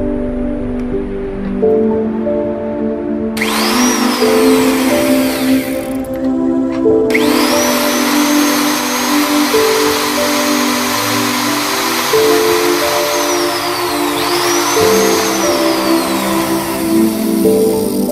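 Power drill boring into a wooden board, over background music. It spins up for about two and a half seconds and stops, then runs again for about ten seconds, with its pitch dipping and rising again partway through.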